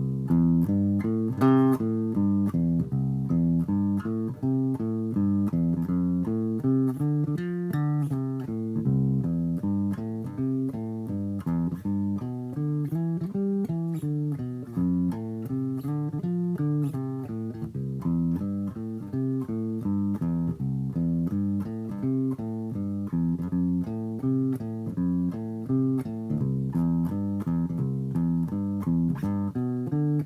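Electric bass guitar played fingerstyle, unaccompanied: an unbroken line of single plucked notes, a few per second, stepping up and down through minor blues scale phrases.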